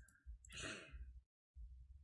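A short, faint sigh about half a second in, over near silence.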